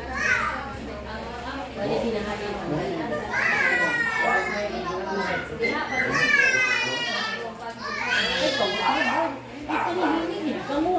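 Crowd of adults and children talking over one another in a room. High-pitched children's voices cry out about three and a half, six and eight and a half seconds in.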